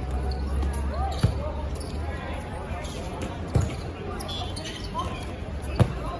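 Dodgeballs hitting the court and players during play: three sharp thuds about two seconds apart, amid players' calls and chatter.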